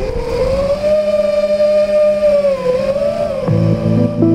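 A 5-inch FPV racing quadcopter (TBS Silk 2345kv motors, three-blade 5-inch props) flying, its motors and props making a steady whine whose pitch slowly rises and falls with the throttle. Background music comes in near the end.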